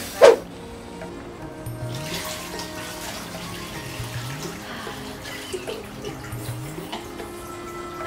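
Water running and pouring into a head-spa wash basin for an herbal scalp soak, under soft background music. A single sharp knock comes just after the start.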